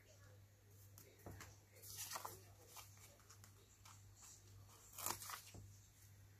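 Faint rustling and a few soft clicks of a paper sticker being peeled from its backing sheet and pressed onto a planner page, over a low steady hum.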